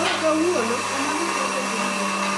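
DeLaval milking-machine vacuum pump, an electric motor on a tank, running with a steady hum.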